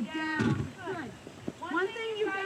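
A high-pitched voice talking indistinctly in short phrases that rise and fall.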